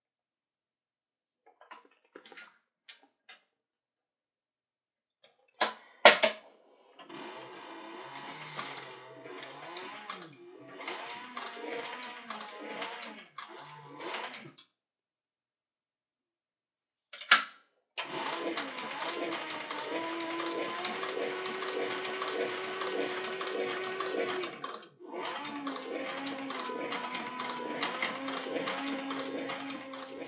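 Industrial cylinder-arm leather sewing machine stitching through leather in two steady runs, the first about seven seconds long and the second about twelve. A sharp click comes just before each run.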